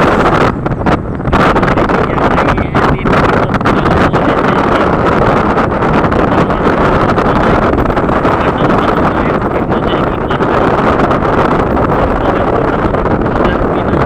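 Wind rushing over the microphone of a camera on a moving motorcycle, loud and steady, with the bike's engine and road noise mixed in underneath.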